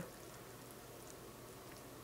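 Near silence: a faint, steady room tone with no distinct sound events.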